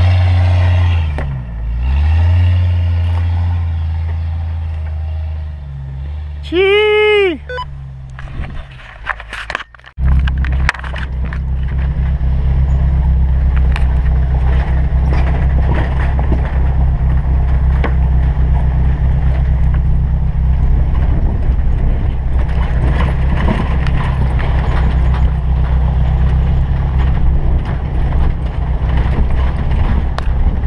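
Jeep engine working at low speed on a rutted dirt trail, its pitch dipping and recovering as the revs change, with a brief high rising-and-falling tone about seven seconds in. After a sudden break about ten seconds in, a steady engine drone with tyre and road rumble, heard from an open-top Jeep driving a dirt road.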